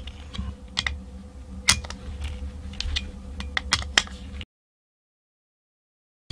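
Irregular small metallic clicks and ticks of a screwdriver turning long screws against the metal case of a Denso starter solenoid, over a low steady hum. The sound cuts to dead silence about four and a half seconds in.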